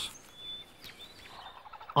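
Small animal calls: brief high-pitched chirps, then a quick chattering trill near the end.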